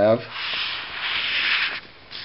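Felt-tip marker drawn across paper, a steady scratchy rubbing for about a second and a half as it draws a line and a curve, then stopping.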